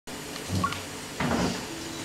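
Two dull knocks, one about half a second in and one just over a second in, then a faint steady low note near the end.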